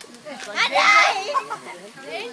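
Children's voices at play, with one loud, high-pitched excited squeal lasting about a second near the middle.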